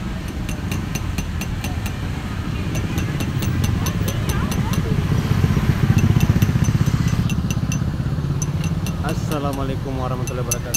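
Low rumble of a motorcycle engine that swells around the middle and then eases, under a run of light high ticks, about four or five a second, that break off twice. A voice comes in briefly near the end.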